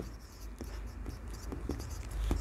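Marker pen writing on a whiteboard: faint, scratchy strokes with a few short ticks as the tip moves and lifts.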